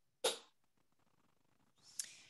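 A person's short throat noise, a single brief burst about a quarter second in, then a quiet breath drawn in near the end just before speaking.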